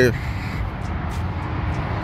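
Steady low vehicle rumble, with a few faint light clicks about a second in.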